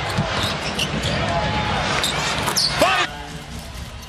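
Live NBA game sound: a basketball bouncing on the hardwood court over arena crowd noise, dropping quieter about three seconds in.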